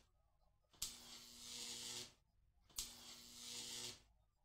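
Faint looping electric-spark sound effect from a sparking lab machine. A sharp click is followed by a hissing buzz with a low hum that swells for about a second and then cuts off dead. It repeats about every two seconds.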